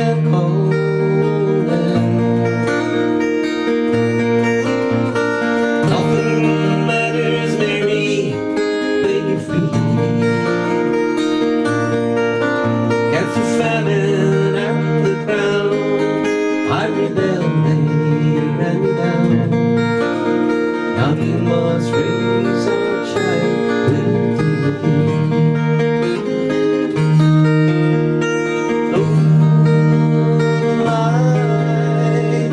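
Steel-string acoustic guitar strummed in a steady rhythm, playing an instrumental passage of an Irish folk tune with regular chord changes.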